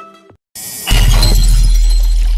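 A sudden loud crash of something glassy shattering about a second in, its ringing fragments dying away slowly.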